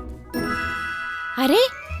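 A cartoon chime sound effect, a cluster of steady ringing tones held for about a second, followed by a short voiced sound that rises in pitch.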